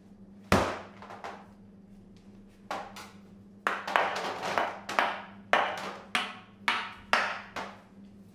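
Sharp knocks on a clear plastic chocolate mould as it is tapped to release the filled bonbons, which drop out onto a stainless-steel table. One loud knock about half a second in, then a quick run of knocks about two a second through the second half.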